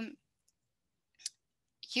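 A short click about a second in, during a pause in a woman's speech; her voice resumes near the end.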